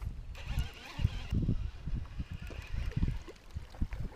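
Irregular low thumping of wind and handling noise on the microphone while a baitcasting reel is cranked to bring in a hooked bass.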